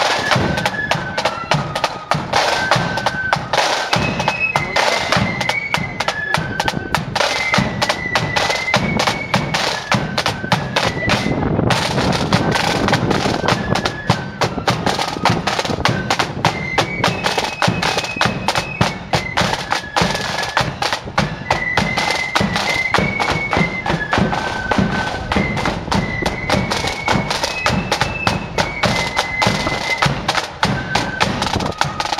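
Marching flute band playing a tune: flutes carry a stepping melody over rapid side-drum beating and the bass drum.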